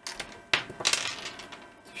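A few light metallic clicks and clinks from handling a desoldering gun and a small circuit board, the sharpest about half a second in and a quick cluster near one second.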